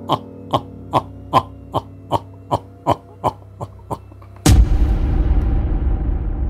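A drawn-out sinister laugh: short 'huh' syllables about two and a half a second, each falling in pitch, growing fainter over a low steady hum. About four and a half seconds in, a sudden loud boom that rumbles on and slowly fades.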